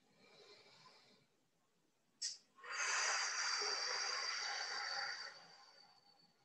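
A person's long, forced exhalation of nearly three seconds, hissing out through the lips with a thin high whistle in it: the breath out on the effort of an abdominal crunch. A short, sharp breath sound comes just before it, and a faint breath early on.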